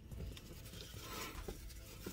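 Faint rustling and a few soft clicks of hands handling and pulling apart a pizza in its cardboard box.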